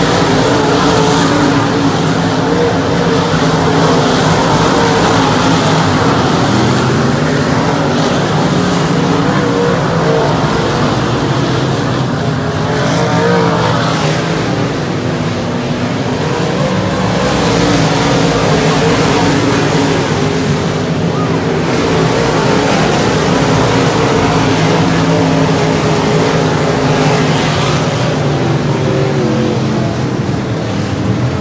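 A pack of dirt-track race cars running at racing speed on a clay oval, several engines sounding at once with their pitch wavering up and down as the cars go through the turns and past the fence.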